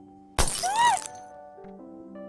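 Soft background music with sustained notes, cut across about half a second in by a sudden loud crash lasting about half a second. A brief high tone rises and falls inside the crash.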